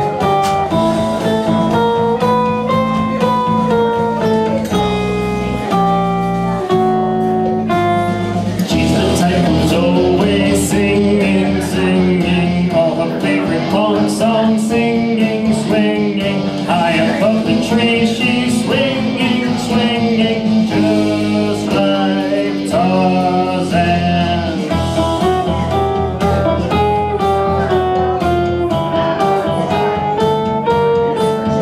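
Electric guitar playing a single-string melody over a backing track, in a kid-friendly heavy-metal style. About nine seconds in, the music turns brighter and busier, with crisp ticks added.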